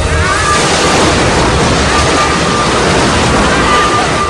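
Loud, steady roar of a torpedo explosion striking a submarine, with a faint high tone that comes and goes.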